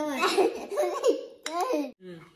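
A young child laughing and giggling in a high voice, with a little babbling between the laughs.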